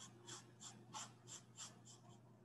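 Faint, quick scratching strokes of a paintbrush worked across a canvas, about three strokes a second.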